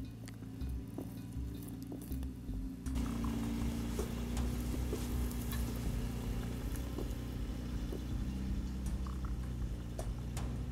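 Supercharged 1996 Toyota Land Cruiser FZJ80's straight-six engine running steadily as the truck climbs a loose, sandy hill, with scattered clicks and a step up in loudness about three seconds in.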